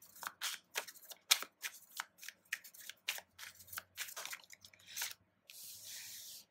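A deck of oracle cards shuffled by hand: a quick, irregular run of short card flicks and slaps, then a smoother rustle of cards sliding together near the end.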